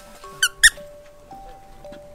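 Light background music with two quick, high squeaks close together about half a second in, the second louder, like an editor's squeak sound effect.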